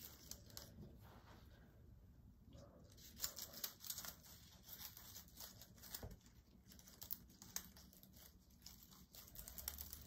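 Faint crinkling and rustling of netting being scrunched by hand against a grapevine wreath, with scattered small clicks, busiest from about three seconds in.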